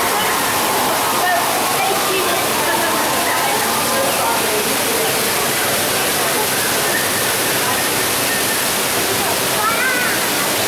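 Steady rush of a waterfall's falling water, with a faint murmur of people's voices underneath.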